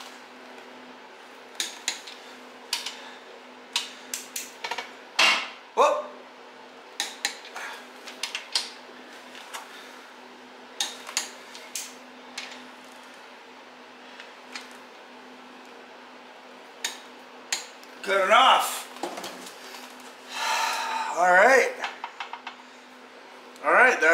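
Scattered sharp metallic clicks and clinks of a click-type torque wrench on the carrier bearing cap bolts of a GM 10-bolt rear axle, set to 60 foot-pounds, over a steady low hum.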